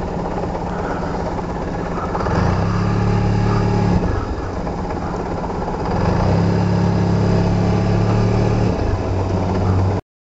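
Scooter engine running as the scooter rolls slowly along the street. The engine gets louder twice, for a second or two about two seconds in and again for about three seconds from six seconds in.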